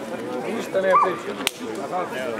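People talking, with one sharp smack about a second and a half in.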